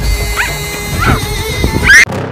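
A young girl's short, high-pitched cries, three in a row with the last the loudest, over background music.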